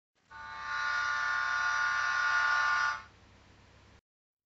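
Steam-locomotive whistle sound effect: one long steady multi-pitched blast lasting about two and a half seconds, fading out about three seconds in.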